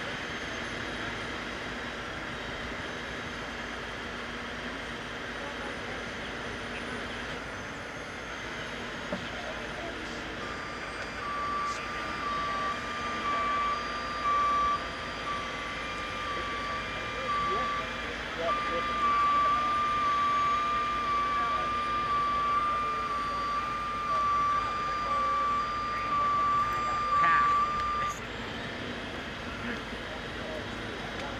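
A truck's backup alarm beeps about once a second, starting about ten seconds in and stopping near the end. This is most likely the tow truck hauling the submerged car out on its cable. Under it runs a steady engine hum.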